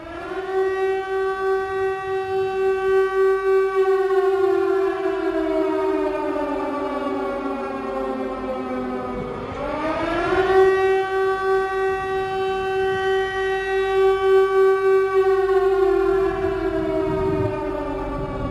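Air-raid siren wailing. It winds up to a steady pitch, slowly winds down, winds up again about ten seconds in, holds, and begins to wind down near the end.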